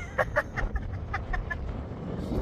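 A woman laughing in about seven short bursts, over wind buffeting the microphone.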